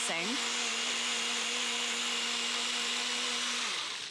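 Nutribullet Pro 900-watt personal blender running at a steady pitch as it blends a thin oil-and-vinegar salad dressing, then cutting off near the end.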